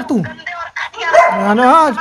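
Speech only: raised voices arguing over a phone call. There is a short shouted word at the start, then about a second of a raised voice near the end.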